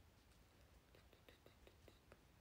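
Near silence: quiet room tone, with a run of about eight faint, soft clicks in the second half.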